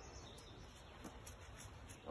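Near silence: faint outdoor background with a few faint high ticks.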